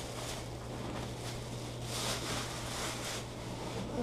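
A plastic bag crinkling and rustling as it is handled and opened, in a string of short crackles, over a steady low hum.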